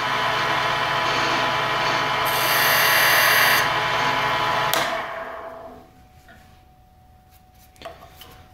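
Central Machinery 10" x 18" benchtop mini wood lathe running with a wooden blank spinning: a steady motor hum that grows louder and hissier for about a second in the middle, then the lathe is switched off about five seconds in and winds down to quiet.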